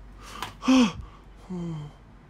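A person's voice making wordless gasping sounds: a short falling gasp a little past halfway, then a lower, longer grunt near the end.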